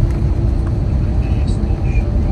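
Cabin noise of an Airbus A321 rolling along the runway just after landing: a steady, loud low rumble from the gear on the runway, with the steady hum of its IAE V2500 engines.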